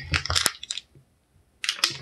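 Plastic snack wrapper of a Nature Valley Granola Cups pack crinkling as it is handled, with a few short crackles, a second of near silence in the middle, then crinkling again near the end.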